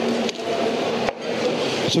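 Steady, noisy hall ambience with indistinct voices in the background, and the presenter's voice starting again at the very end.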